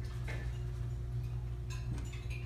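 Room tone in a pause: a steady low hum with a few faint ticks and clinks of tableware.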